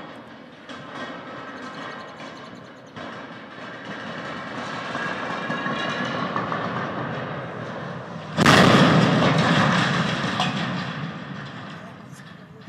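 A steel water tower toppling: its legs creak with a high, strained metal sound that grows louder as it leans. About eight seconds in, the tank and legs hit the ground in a loud crash, and the rumble fades away.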